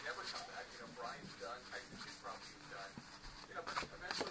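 Trading cards flipped through by hand, soft scattered flicks and slides of card against card.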